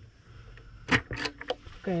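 A few quick clicks and light rattles about a second in, from fingers working the switch of a table lamp.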